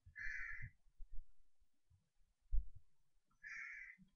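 Two short, harsh bird calls about three seconds apart, with a dull low knock between them.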